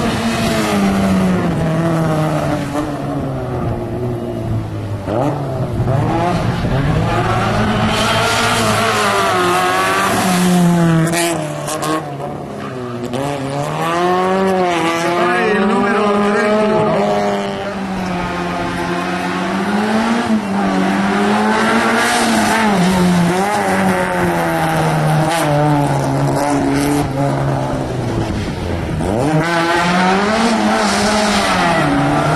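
Autobianchi A112's four-cylinder engine revving hard through a tight slalom, its pitch climbing and dropping again and again as the car accelerates and lifts off between the turns, with a couple of brief dips.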